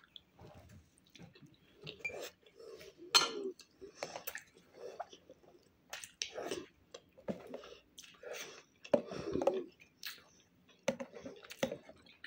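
Close-up chewing and mouth sounds of a person eating a fried pirozhok, in short irregular bursts.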